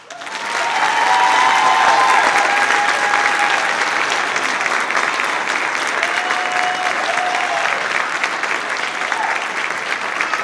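Audience applause breaking out just as the choir's singing ends, building over the first couple of seconds and then holding steady, with a few cheers.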